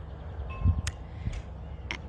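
Low rumble of wind on a phone's microphone outdoors, with a faint short tone and a click about half a second in.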